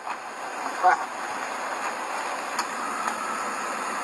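A man's short call of "baja" about a second in, over a steady rushing background noise from an outdoor roadside phone recording.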